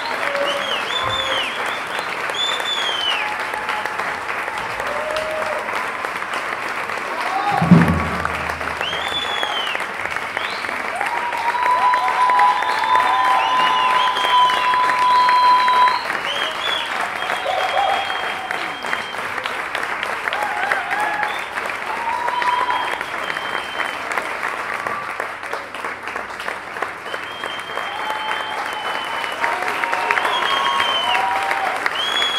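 Audience and performers applauding, with cheering calls and whoops rising above the clapping and one long held call partway through. A single loud low thump sounds about eight seconds in.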